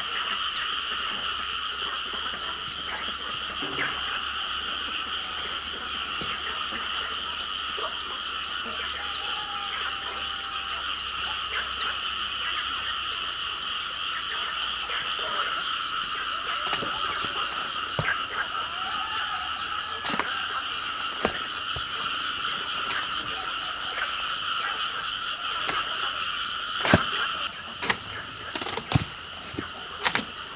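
A steady chorus of frogs calling, a dense, fast-pulsing trill in two pitches, that stops shortly before the end. Several sharp knocks follow near the end.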